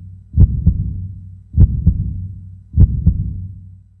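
Heartbeat sound effect: three slow double thumps (lub-dub), about one every 1.2 seconds, over a low hum that fades out toward the end.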